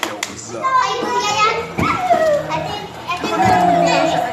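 Children's excited high-pitched shouts and squeals, several calls one after another.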